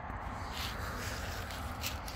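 Rustling and handling noise as a handheld camera moves over grass, with two brief bursts of hiss, over a steady low outdoor rumble.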